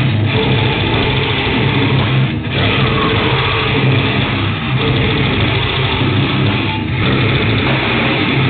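Black metal band playing live: heavily distorted electric guitars over fast, pounding drums, recorded loud and overdriven. The wall of sound breaks briefly about every two seconds.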